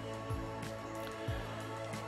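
Quiet background music with sustained, held notes.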